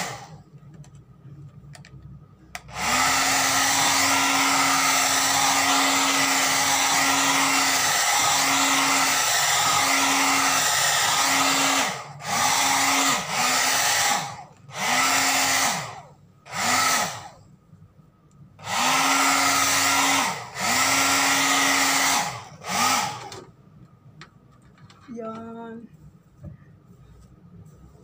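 Handheld hair dryer blowing on wet hair, running steadily for about nine seconds, then switched off and on in a string of short bursts near the end. Each time it cuts out, its motor hum slides down in pitch as it spins down.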